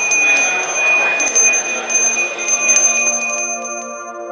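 A bell rung repeatedly with uneven clinking strikes, its high ringing tones held between strokes over a noisy wash. It fades near the end as soft ambient music comes in.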